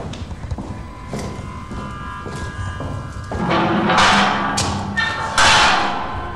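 Film score music with repeated thuds, building into two loud, harsh swells in the second half.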